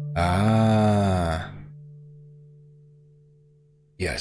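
A man's drawn-out wordless vocal sound, about a second and a half long, its pitch rising then falling. Under it a soft held tone of ambient generative music slowly fades out.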